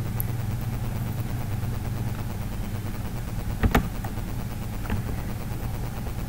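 Steady low electrical hum on the recording, with a single sharp click a little past halfway through and a fainter click about a second later.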